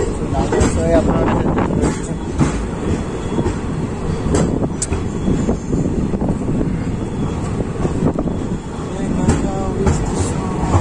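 Passenger train running through a station, heard at an open coach door: a steady rumble of wheels on rails with irregular clattering and knocking from the wheels and coach.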